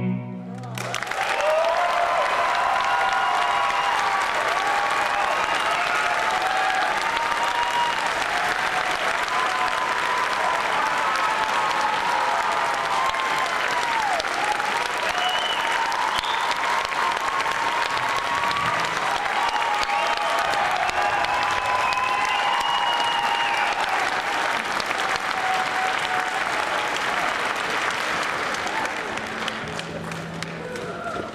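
Audience applauding loudly and steadily, with cheering and whooping voices riding over the clapping. The last bowed cello note dies away in the first second, and the applause fades near the end.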